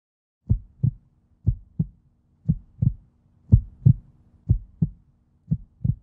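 Heartbeat sound effect: low lub-dub double thumps, about one pair a second, six pairs in all, over a faint steady hum.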